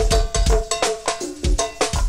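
Live go-go band percussion groove: cowbells struck in a steady syncopated pattern over kick drum and drums, with no vocals.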